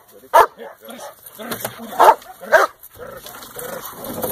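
German Shepherd barking at a decoy hidden behind a blind during protection training. It gives three loud barks, about a third of a second, two, and two and a half seconds in, with quieter barks between.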